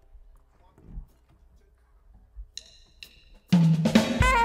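A jazz quartet of saxophone, keyboard, electric bass and drum kit enters together about three and a half seconds in, with a strong low bass note under the melody. Just before, two sharp clicks half a second apart, typical of a drumstick count-in.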